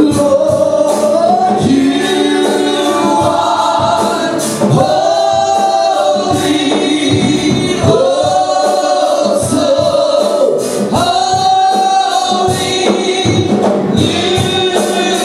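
Gospel worship singing by a group of voices, with long held notes over a steady beat.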